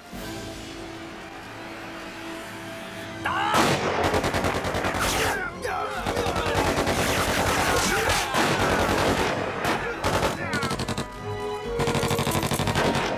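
Tense film score holding steady notes, then about three seconds in a dense burst of gunfire breaks out: rifles and automatic weapons firing rapidly and continuously in a firefight, with the music running underneath.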